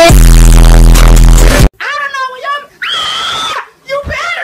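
An ear-splitting, clipped and distorted blast with a deep buzzing tone, lasting about a second and a half and cutting off suddenly. A person then yells, ending in a drawn-out high scream.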